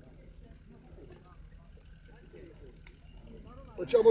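Faint, distant talking over a quiet outdoor background, with a few faint clicks. A voice starts up loudly near the end.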